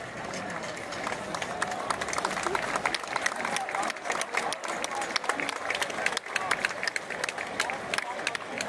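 Crowd of spectators clapping, the claps thickening about a second in, with voices chattering among them.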